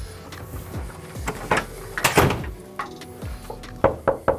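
A wooden office door handled and pulled shut, landing with a thud about two seconds in after a few smaller clunks, then a first knuckle knock on the door just before the end.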